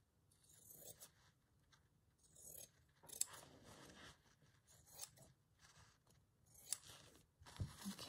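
Faint, irregular snips of scissors cutting through a sheet of paper-backed iron-on fusible web, roughly one cut every second.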